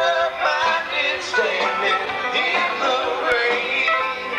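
A live country band playing, guitars and drums with a melody line carried over them, picked up from out in the audience.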